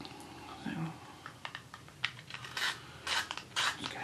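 Tombow Irojiten coloured pencil drawn across paper in short, quiet, scratchy strokes.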